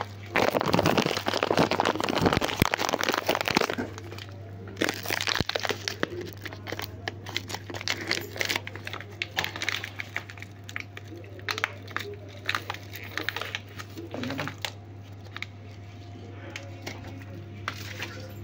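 Plastic food packets crinkling and crackling as they are handled, loudest and densest in the first few seconds, then in scattered crackles. A steady low hum runs underneath.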